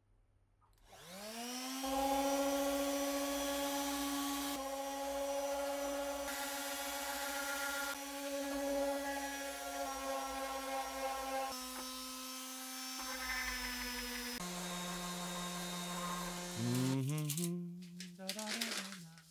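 Metabo random orbital sander spinning up about a second in, then running steadily with a pitched whine as its pad sands bare wood. The sound jumps abruptly several times, and the pitch drops and wavers near the end.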